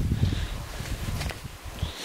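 Footsteps on steep stone steps: a few scuffs and knocks over a low rumble that fades away.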